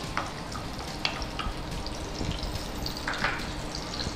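Chopped onions and carrots frying in oil in a steel kadai, a steady sizzle with a few short clicks of a spatula against the pan.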